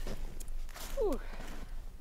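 A voice says 'ooh' with a falling pitch about a second in. Before it come a couple of brief scuffing noises.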